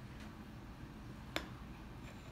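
Quiet room tone with one short, sharp click about a second and a half in.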